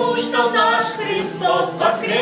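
A man and two women singing an Easter song in Russian together, unaccompanied, holding long sung notes.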